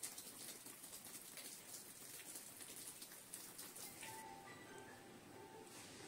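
Faint patter and dripping of rainwater just after a short shower, many small ticks over a soft hiss. About four seconds in this gives way to quiet background music.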